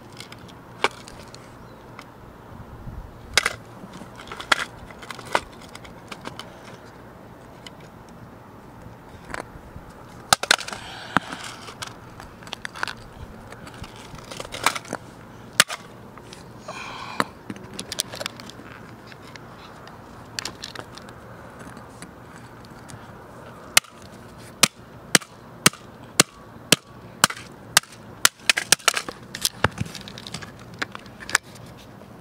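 Plastic case of a Casio fx-7700GE graphing calculator being smashed: scattered sharp cracks and knocks, then a quick run of hits about two a second near the end.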